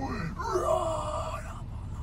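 A faint voice making low sounds without clear words, over a steady low rumble inside a car.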